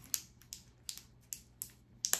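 Vacuum-sealed plastic pouch crinkling in a few irregular, sharp crackles as fingers work at peeling its stubborn seal open.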